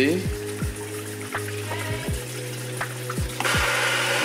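Kitchen pull-down faucet turned on about three and a half seconds in, water rushing out in a hiss and showing off the pressure from a newly installed water tank.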